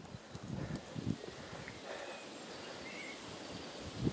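Quiet rural outdoor ambience: a few soft low thuds in the first second or so, then a faint steady background with a few short bird chirps near the middle.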